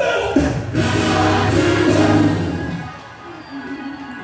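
Gospel music with a choir singing, swelling over the first half and dropping away about three seconds in.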